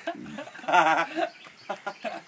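A man laughing: a loud burst of laughter about the middle, then a few short laughs near the end.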